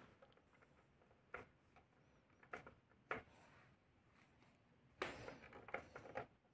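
Near silence: room tone with a few faint knocks and small handling sounds, a little cluster of them near the end.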